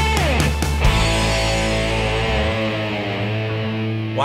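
Fuzzed electric guitar through a Line 6 POD's digital Fuzz Box amp model with a 2x12 cab model, quarter-note delay and a little reverb, played with drums. A note slides down and the last drum hits land in the first second, then a held chord rings out and fades through the delay.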